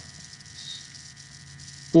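Sharpie marker writing on paper, faint strokes over a steady electrical hum.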